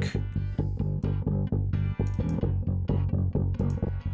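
Thumb-played DI electric bass running a fast, pulsing rhythm of repeated plucked notes, processed through the MidAmp amp-simulator plugin with its highs rolled far off and blended with the dry signal. The amp gain is being adjusted to give the notes more attack.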